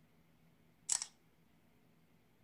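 Smartphone camera shutter sound, a single quick double click about a second in, as a photo is taken.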